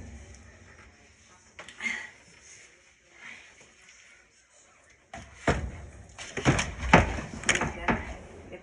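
A few knocks and bumps, then a quick cluster of louder ones from about five seconds in.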